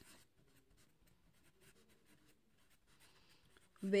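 Felt-tip marker writing a word on paper: a run of faint, short scratchy strokes and taps. A woman's voice begins near the end.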